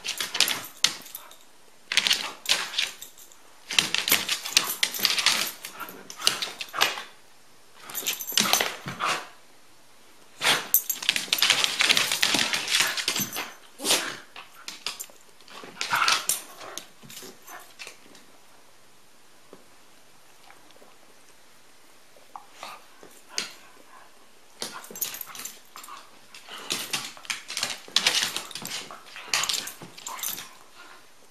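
A corgi and a poodle play-fighting: irregular bursts of dog play noises and scuffling, with claws clicking on a hardwood floor. The bursts come in clusters, with a quieter lull after about 18 seconds before they start up again near the end.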